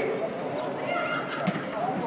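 Players' shouts echoing through an indoor football hall, with some calls rising and falling in pitch, and a sharp knock about one and a half seconds in.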